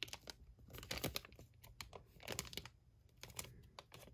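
Thin clear plastic wrapping crinkling in short, irregular crackles as the die-cast toy airliner sealed inside it is handled and turned over.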